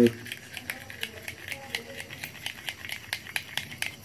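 A metal spoon clinking and scraping against a glass bowl as a liquid is stirred briskly, making a run of quick, irregular light clicks.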